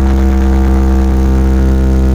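Large RCF DJ speaker box stack playing electronic dance music loud and bass-heavy: a held, steady drone of deep bass notes with no beat.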